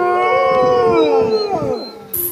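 Several wolves howling together, long overlapping howls at different pitches that glide slowly downward and fade near the end.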